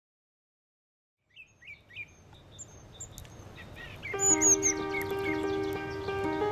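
Silence for about a second, then bird chirps and calls fade in and grow louder. About four seconds in, background music with long held notes begins under the birdsong.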